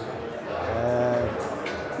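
A man's drawn-out hesitation sound, a low hummed 'uhh' held for about a second, between phrases of speech.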